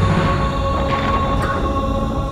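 Dramatic background score: a low rumbling drone under steady held tones.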